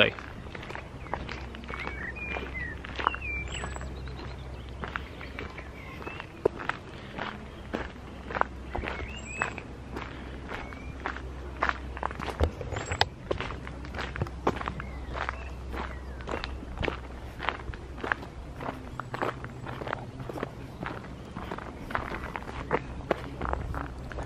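Footsteps of a person walking on a dirt path, about two steps a second, with occasional short high chirps of birds in the trees.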